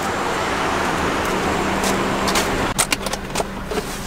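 Street traffic: a passing car's steady rush that eases off about halfway through. Near the end come a few sharp clicks as a car door is opened.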